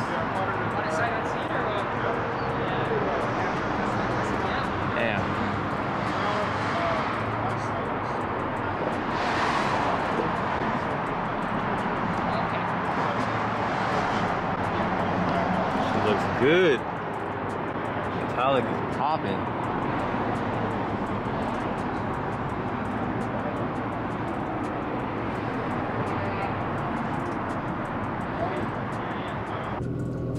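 Indistinct voices over steady outdoor background noise, with a brief louder sound about halfway through.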